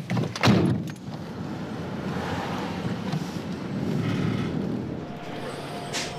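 Pickup truck door unlatching and swinging open with a clunk about half a second in, followed by a steady low rumble.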